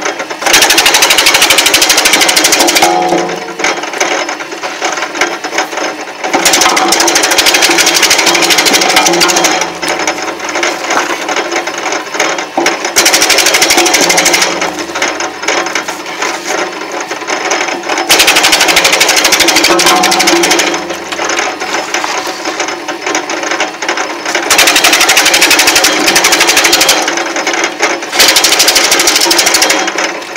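Homemade electric belt-driven wood chipper cutting branches as they are fed in. There are six spells of loud, rapid chopping clatter, each a couple of seconds long, with the machine running at a lower, steadier level with a hum in between.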